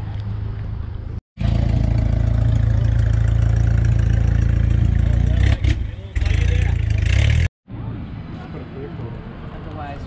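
Engine of an open-top International Scout running loud and low as it pulls away, with a brief dip and then a rise in revs toward the end. The sound starts and stops abruptly.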